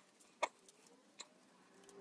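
A few faint clicks and ticks of small plastic parts: a cooling fan being worked loose from a printer's hotend shroud, with one clearer click about half a second in.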